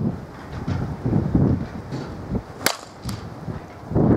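A softball bat striking the ball once with a sharp crack a little past the middle, followed a moment later by a fainter click.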